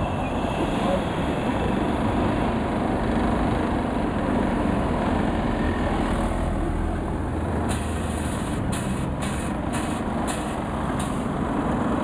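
Road traffic running steadily, with cars passing close by. From about eight seconds in, a run of about six sharp knocks roughly half a second apart.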